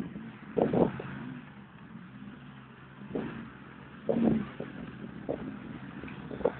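Off-road side-by-side and ATV engines running, with a low steady hum and a few short, louder bursts about a second in and again two to three times later.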